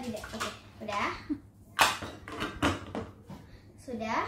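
Brief child's voice sounds, then two sharp knocks from kitchenware being handled, a bowl and spoon, about a second apart.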